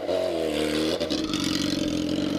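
Sport motorcycle engine revving up and dropping back in the first second, then running steadily at low revs. The engine is running hot, kept at low revs to cool it down.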